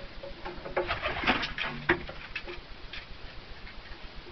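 Domestic pigeons in a loft: a short flurry of sharp flapping strokes with a brief low coo between about one and two seconds in, over a faint, fast, regular ticking.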